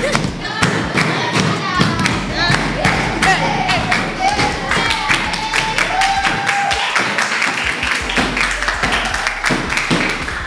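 A group of girls clapping and thumping out a beat, with voices singing and shouting along over it.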